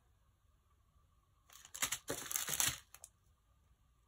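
Clear plastic packets of diamond-painting gems crinkling as they are picked up and moved, a series of short rustles over about a second and a half around the middle.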